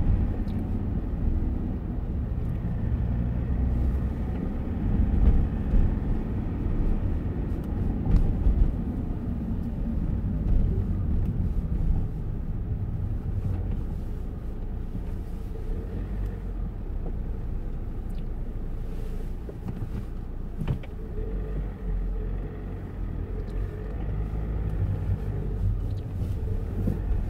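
Car driving at low speed on city streets, heard from inside the cabin: a steady low rumble of engine and tyre noise, with a few louder bumps about five to eleven seconds in.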